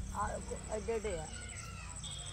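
A faint, distant voice speaks a few brief words in the first second or so, over a steady low background hum.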